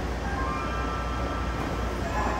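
A moving electric commuter train heard from inside the car: a steady low rumble of running gear and car noise. From about half a second in, faint high squealing tones sound above it.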